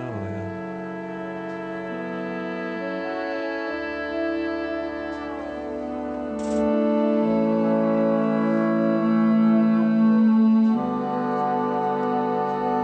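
Recorded music playing: slow, sustained brass chords, each held note changing every second or two. It swells louder about two-thirds of the way through, then drops back.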